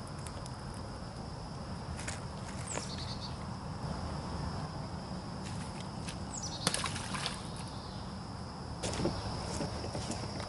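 Bayou-side ambience: a steady high insect buzz over a low background rumble, with two short descending bird calls, one about three seconds in and one near seven seconds. A few brief clicks and knocks come from handling the line and bait.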